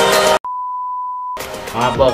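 Background music cuts off and a single steady electronic beep at one pitch sounds for about a second, then the music comes back.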